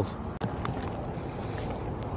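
Steady low rumble and hiss of outdoor background noise, with a few faint ticks.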